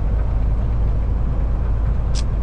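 Kenworth T680 semi truck's diesel engine and road noise heard inside the cab in slow traffic, a steady low rumble.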